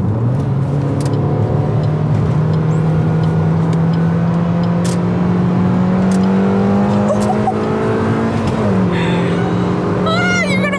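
Suzuki Swift Sport's four-cylinder engine accelerating hard, heard from inside the cabin. The engine note climbs steadily for about eight seconds, then drops with an upshift of the manual gearbox near the end.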